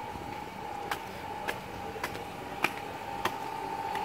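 Footsteps on concrete: five sharp, evenly spaced steps about every 0.6 s, a walking pace, beginning about a second in. A steady high-pitched hum runs faintly underneath.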